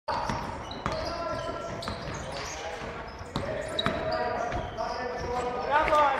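Live game sound in an echoing gymnasium: a basketball bouncing on the court floor in sharp knocks, with short high squeaks and players' voices. A loud shout comes near the end.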